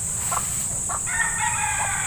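A rooster crowing: one long, drawn-out call that starts about halfway through.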